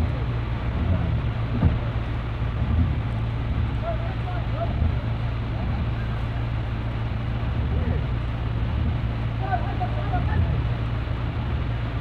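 A vehicle engine running steadily as a low rumble in floodwater, under a continuous rushing noise. Faint shouts of men are heard about four seconds in and again near the end.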